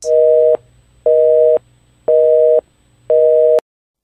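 Telephone busy signal: four beeps of a steady two-note tone, each about half a second long with half-second gaps, the sign of a hung-up or engaged line. It cuts off suddenly with a click after the fourth beep.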